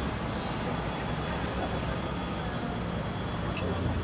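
Steady outdoor background noise of a show ground: a low, even hum with faint indistinct voices, and no distinct hoofbeats.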